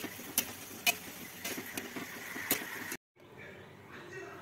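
Oil sizzling as pieces of chana dal dough deep-fry in a steel kadai, with a steel ladle clinking against the pan about five times. The sound cuts off suddenly about three seconds in.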